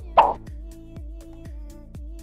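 A short pop sound effect with a falling pitch, just after the start, over background music with a steady beat.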